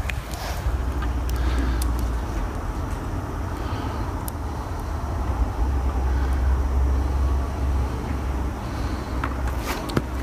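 Low outdoor background rumble that swells and eases twice, with a few faint ticks.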